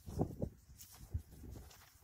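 Wind gusting on the microphone in an irregular low rumble, with faint rustles and light taps of a damp paper sheet being pressed onto a plastic lid.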